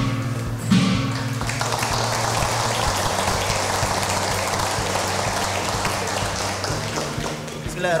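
Large hanging gong struck with a padded mallet about a second in, its low hum ringing on for a couple of seconds, then a roomful of people applauding for several seconds.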